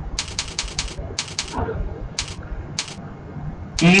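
Computer keyboard keys being tapped: a quick cluster of clicks near the start, two or three more about a second in, then single clicks at roughly second-long gaps.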